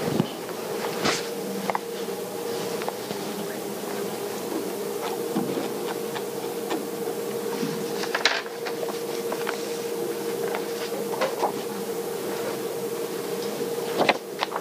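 A steady mid-pitched hum, with scattered clicks, knocks and paper rustling from papers and the lectern computer being handled; the sharpest knocks come about a second in and about eight seconds in.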